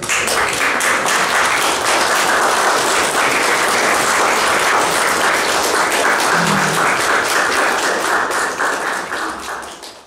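Audience applauding, dense and steady, dying away near the end.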